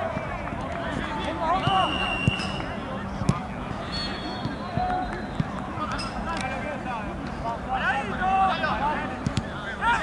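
Several players calling and shouting to one another across a football pitch, voices overlapping, with a few sharp thuds; the loudest comes about three seconds in.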